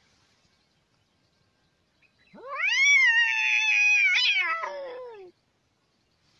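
A cat's single long yowl, about three seconds long and starting about two seconds in: the pitch rises sharply, holds, then slides down before it stops.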